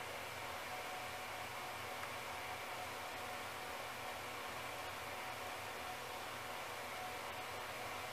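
Steady low hiss of room tone, with no distinct events.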